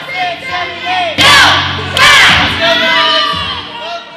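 A group of young girls shouting and cheering together, many voices at once, with the loudest yells about a second in and again about two seconds in.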